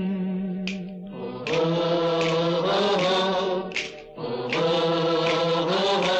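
A male singer in a Hindi film song holds long, slow notes that waver slightly in pitch, breaking off briefly about a second in and again about four seconds in. These are the drawn-out opening words of the song.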